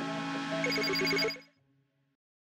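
Short electronic channel-ident jingle with rising synth sweeps and rapidly pulsing high, bell-like tones, fading out about a second and a half in.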